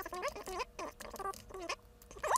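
Quick clicks of typing on a computer keyboard while code is edited, mixed with many short, high, squeaky chirping tones.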